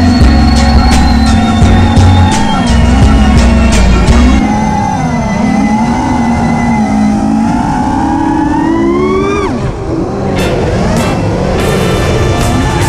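FPV racing quadcopter's motors and propellers whining, the pitch wavering up and down with throttle, climbing to a peak about nine seconds in and then dropping sharply. A rap beat with heavy bass plays over the first few seconds and comes back near the end.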